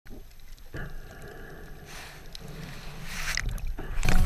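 Muffled underwater water noise through a GoPro camera held underwater while snorkelling: a low rumble with a hiss over it, getting louder near the end.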